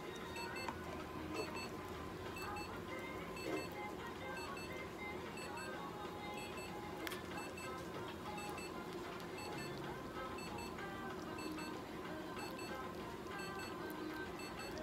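Short electronic tones repeating in pairs every second or so over a steady low hum, with a few small handling knocks and one sharp click about seven seconds in.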